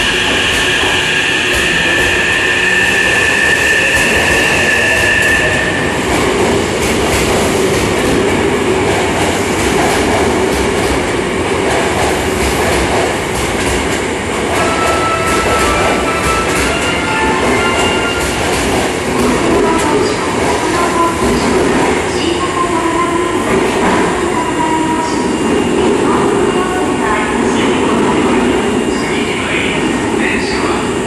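Hankyu 9000-series electric train pulling out of an underground station platform and running off into the tunnel, a continuous echoing rumble of wheels on rail with knocks over the joints. A steady two-note high tone sounds over it for about the first five seconds.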